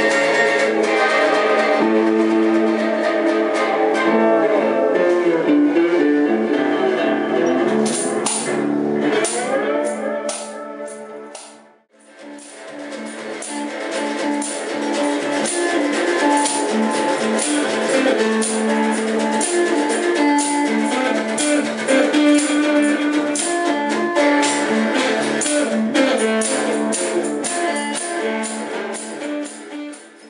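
Electric guitar being played, picked notes and chords, with a run of light clicks over it from about eight seconds in. The sound fades to a brief silence about twelve seconds in, then the playing picks up again.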